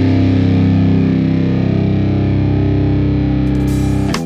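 Alternative rock: distorted electric guitar through effects holding a sustained chord, with no drum hits; a high hiss rises near the end.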